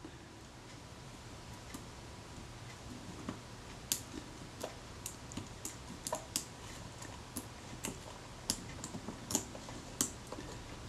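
Faint, irregular small clicks and ticks as a scalpel blade pries the leatherette covering off a Kodak Retina Reflex camera body, the brittle old adhesive cracking as it comes away.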